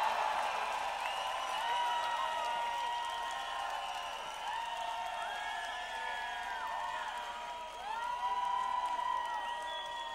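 A large outdoor festival crowd cheering and whistling between songs, with many long whistles rising, holding and falling over the steady noise of the crowd.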